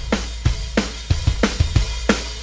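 Background rock music: a steady drum-kit beat with bass drum, snare and cymbals, about three hits a second.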